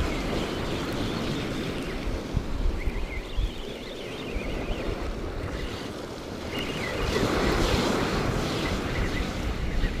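Sea waves breaking and washing against a rocky shore, with wind buffeting the microphone. The surf swells louder about seven seconds in.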